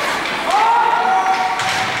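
A spectator's long drawn-out "ohhh" shout, rising in pitch and then held for about a second, over the general noise of an ice rink.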